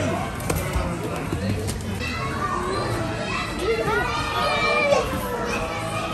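Many children's voices overlapping at play in a large indoor soft play hall: shouts and squeals with no clear words.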